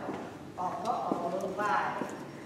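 A person speaking, with a few faint clicks.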